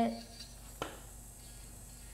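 Electric nail file (e-file) spinning a medium diamond ball bit at high RPM against the cuticle, a faint steady hum, as it exfoliates dry skin in a dry manicure. A short click just under a second in.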